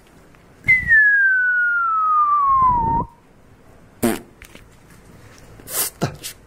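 A person whistling one long note that slides steadily down in pitch for about two seconds, starting just under a second in. Two short breathy sounds follow near the end.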